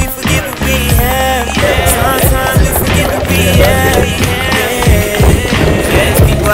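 Background hip hop track with a steady beat, bass and melodic lines, with no rapped words in this stretch.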